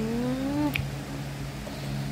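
A woman's long closed-mouth 'hmm' of enjoyment while tasting chocolate, sliding upward in pitch. It stops about three-quarters of a second in with a short smacking click as she licks her finger.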